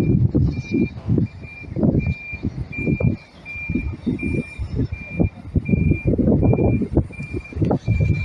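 A coach's reversing alarm beeping at an even pace, about three short high beeps every two seconds, over loud, uneven low rumbling from the manoeuvring bus.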